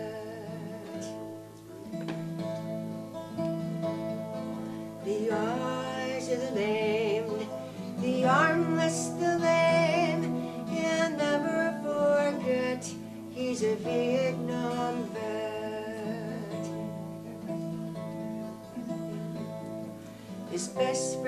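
A twelve-string acoustic guitar played under a woman's singing voice in a folk song, the singing coming in stretches between guitar passages.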